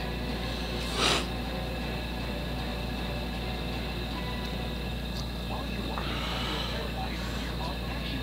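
Faint, muffled voices of an argument over a steady low hum, with one short louder noise about a second in.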